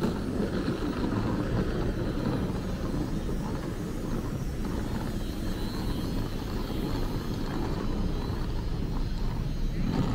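Steady city street traffic noise: car engines and tyres running as a low, even rumble at a pedestrian crossing.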